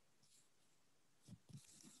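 Near silence on a video call, with a few faint, short soft sounds near the end.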